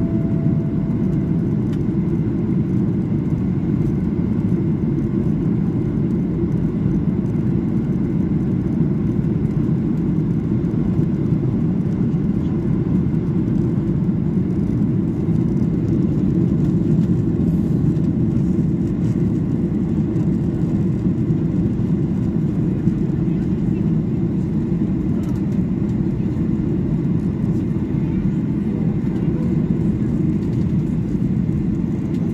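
Steady roar of a jet airliner's engines and airflow heard inside the cabin during final approach with flaps down: a deep, even rumble with no change in level.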